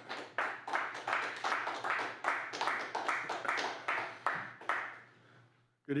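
A small group clapping after a public comment, separate claps at a quick, even pace, tapering off and dying out about five seconds in.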